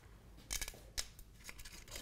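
Screw cap of a glass olive oil bottle being twisted open, giving a few sharp clicks: a quick cluster about half a second in and another click at about one second.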